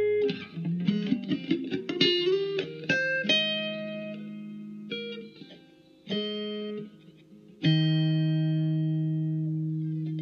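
Acoustic-electric guitar played through a small amp: a quick run of picked notes, then three chords struck one after another, each left to ring and fade, the last held to the end.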